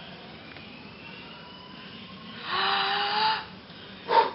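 A toddler blowing at a birthday candle: one breathy puff of about a second, starting about two and a half seconds in, with a faint hum of voice in it.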